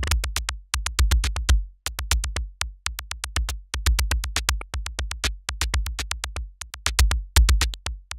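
Electronic drum loop of fast, clicky percussion hits played through Yum Audio's SLAP plugin, its subharmonic synthesizer adding a short decaying sine sub-bass tone under each transient for a subby bass-drum weight.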